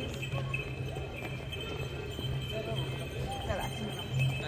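Voices of people chatting across a busy stone-paved square, with a steady clopping on the paving underneath.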